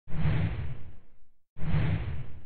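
Two whoosh sound effects with a strong low rumble underneath. Each starts suddenly and fades away over about a second, and the second one comes in near the end.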